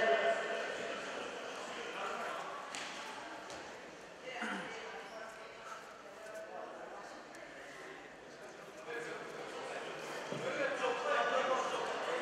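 Indistinct voices and chatter echoing in a large sports hall, with a few scattered knocks or thuds; the voices grow louder near the end.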